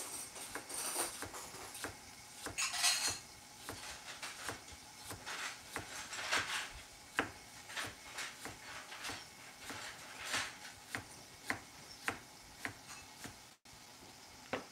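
Santoku knife slicing a raw carrot on a plastic cutting board: irregular sharp taps of the blade on the board, a few a second, with a few short scraping sounds.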